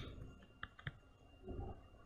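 A few faint, scattered clicks of a stylus on a pen tablet while words are handwritten.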